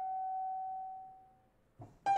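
Alto saxophone holding one long high note unaccompanied, which fades away to nothing about a second and a half in; a piano comes in right at the end.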